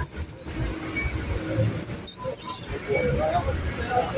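Town street traffic: vehicle engines running at low speed, with people's voices in the background.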